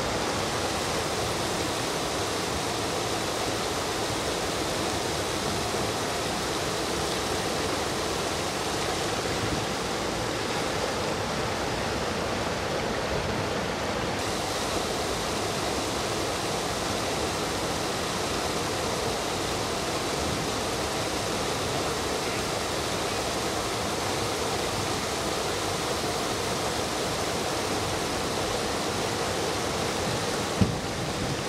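Steady rush of river water pouring over a rocky ledge in a small rapid, a continuous even noise with no let-up.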